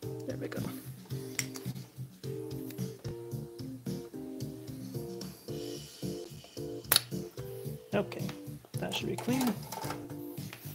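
A spring-loaded desoldering pump (solder sucker) fired once, giving a single sharp snap about seven seconds in. Background music with steady held notes plays throughout.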